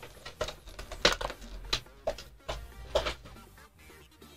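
A rolled, glossy printed play mat crackling and rustling in about seven sharp crackles as it is handled and unrolled by hand, over quiet background music.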